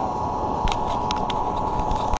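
A steady motor hum over an even rushing noise, with a few light clicks around the middle.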